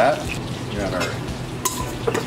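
Skin-on salmon fillets frying in a skillet: a steady sizzling hiss. A sharp click with a brief ring near the end.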